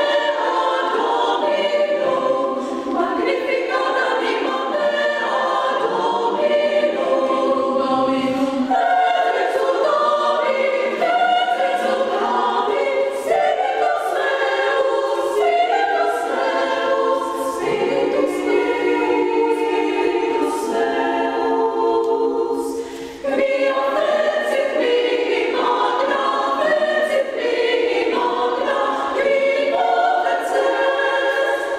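Women's chamber choir singing in several voices. The singing is continuous, with one short break about three quarters of the way through.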